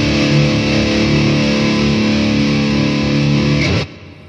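Goldtop Les Paul-style electric guitar played through a distorted amp, holding a ringing chord steadily. The chord is cut off suddenly just before the end.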